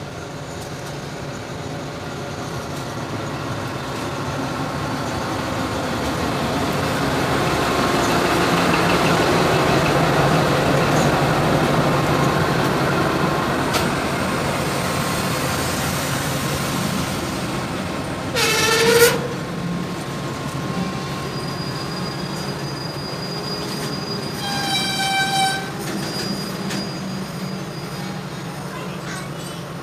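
A diesel-electric locomotive hauling a container freight train passes close by: its engine and the clatter of the wagons build to a peak, then the container flat wagons keep rumbling past. Two short, shrill high-pitched tones cut in, one about two-thirds of the way through and another near the end.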